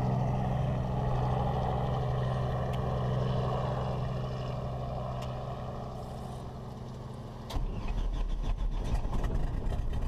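Steady engine drone on an airport ramp, fading slowly. About three quarters of the way in it cuts to a louder, deeper and rougher piston engine heard from inside a light aircraft's cockpit.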